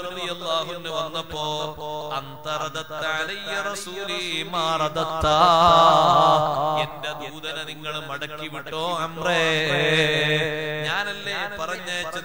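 A man's voice chanting melodically, with long held, wavering notes, louder in two swelling phrases, over a steady low hum.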